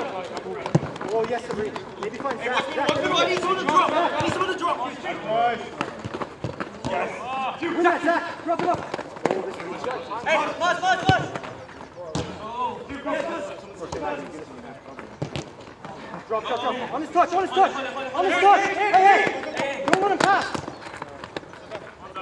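Players' voices shouting and calling to each other during a soccer match, overlapping and too far off to make out, with a few sharp knocks of the ball.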